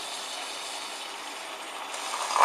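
Espresso machine running, with a steady hiss as very hot pressurised water is forced through the filter basket and dribbles into the glass carafe.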